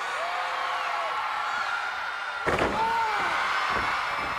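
Wrestler's flying elbow drop from the top rope landing in the ring with a loud slam about two and a half seconds in, followed by a smaller thud, over steady arena crowd noise with whistling.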